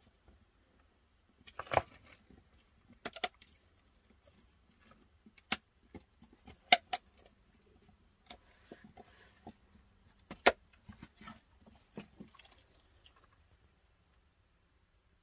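Loose rock and gravel shifting and knocking against rock: sparse, sharp clicks and knocks with quiet between, the loudest about two, seven and ten and a half seconds in.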